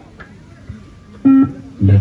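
A single short, loud electronic beep from a bleep-test recording about a second in, signalling the end of a shuttle run. A voice starts just before the end.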